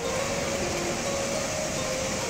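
Small sea waves breaking and washing onto the shore: a steady rush of surf.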